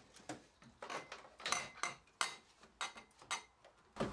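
Light, irregular clicks and knocks of small metal parts being handled, about ten across four seconds: the Davies Craig electric water pump being brought up to its bracket.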